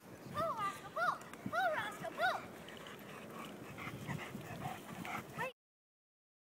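A dog whining in short, high cries that rise and fall in pitch: four clear ones in the first two and a half seconds, then fainter ones. The sound cuts off suddenly about five and a half seconds in.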